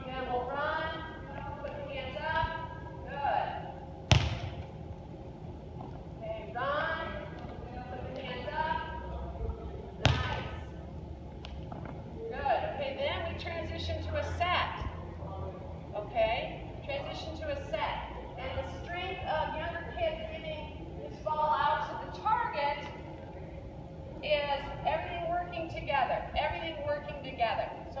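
Mostly a person talking, with two sharp smacks of a volleyball, about four and ten seconds in, that are the loudest sounds.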